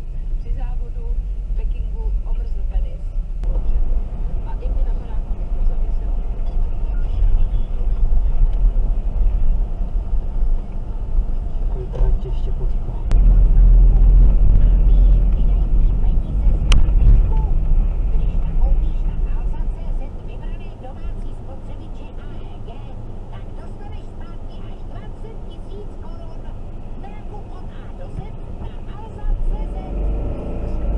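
Low rumble of a car's engine and tyres heard inside the cabin while driving slowly on a wet, snowy road, swelling louder for a few seconds near the middle and settling lower later, with a car radio talking quietly over it.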